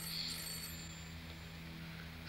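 A quiet pause in an old TV drama soundtrack: a steady low hum, with a faint high ringing tone in about the first half-second.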